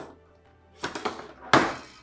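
Metal telescopic radio antenna being pulled out: a few small scraping clicks as the sections slide, then one loud sharp clack about one and a half seconds in as it reaches full extension.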